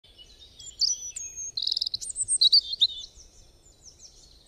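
Birdsong: several birds chirping and trilling in quick, high calls, busiest in the middle and thinning out toward the end.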